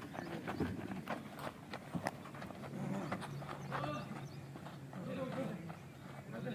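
Footsteps of a group of men running in file over packed dirt, a quick irregular patter of shoe strikes, with faint voices calling in the background.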